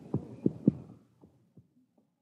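Sound effect of a horse's hoofbeats, about three a second, fading and stopping about a second in as the horse is reined in with a "whoa".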